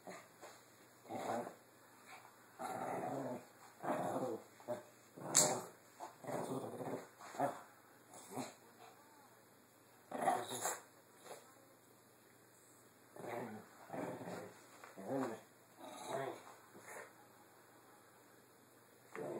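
Small fluffy dog growling in play while it tussles with a plush toy, in short irregular bursts with a few quiet gaps.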